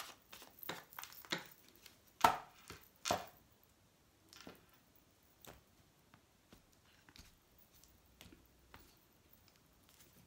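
A small deck of Lenormand (cigano) playing cards being shuffled by hand and cards laid down on a wooden table: a run of irregular soft clicks and slaps, the loudest two about two and three seconds in, sparser in the second half.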